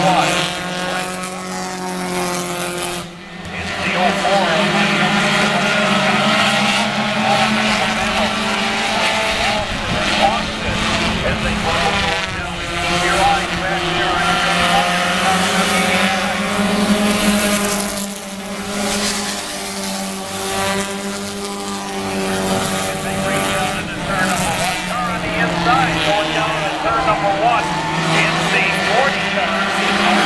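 Several four-cylinder stock-car engines racing on a short oval track at once, their pitch rising and falling as the cars circulate. The sound drops away briefly about three seconds in.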